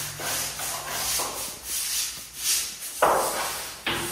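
Stiff-bristled brush on a long wooden pole scrubbing a painted wall in repeated scratchy up-and-down strokes, with a louder stroke about three seconds in.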